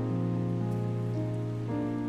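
Soft background music of held chords over a steady bass note, the chord shifting a little partway through.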